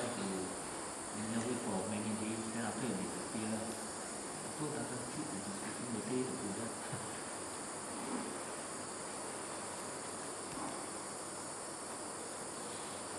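A steady high-pitched chorus of night insects such as crickets, with faint voices talking for the first seven seconds or so.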